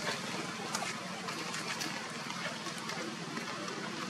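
Steady outdoor background hiss with a low hum, and a few faint clicks.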